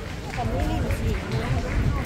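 Voices of passers-by talking on a crowded pedestrian walkway, over a steady low rumble.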